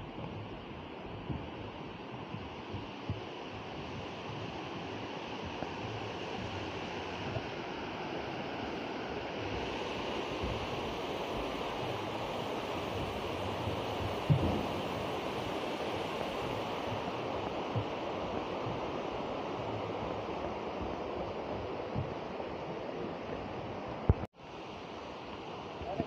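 Steady rush of flowing water that grows gradually louder, with one sharp thump about halfway through and a few faint clicks.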